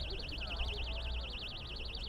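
Electronic alarm sounding a high, rapidly warbling tone without a break: a security alarm set off by hammering on a rail. A low steady rumble lies beneath it.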